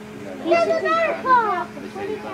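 A child's high-pitched voice calling out with no clear words, its pitch gliding up and down, over a steady low hum.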